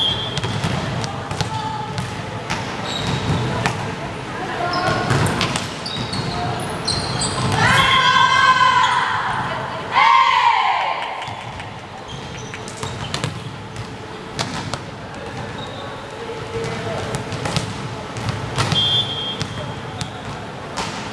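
Indoor volleyball rally in a hall: scattered sharp ball hits and shoe squeaks, with a referee's whistle blowing briefly at the start and again near the end. Around the middle, about eight and ten seconds in, players shout and cheer loudly as their team wins the point.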